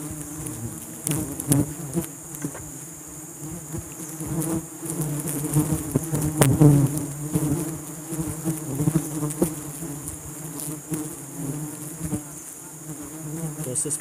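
Bees buzzing steadily in a swarm around honeycomb being broken open by hand during a honey harvest, with scattered knocks and scrapes from the comb being handled.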